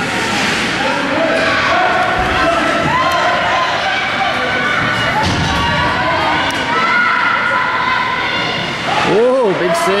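Spectators in an ice arena calling out and cheering over each other, with a few sharp clacks from the play on the ice. One man's voice shouts out close by near the end.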